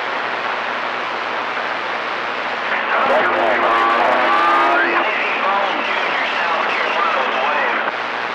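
CB radio receiver hiss and static, with garbled, distorted voices of distant skip stations breaking through the noise from about three seconds in. A steady low tone sits under the voices for a couple of seconds.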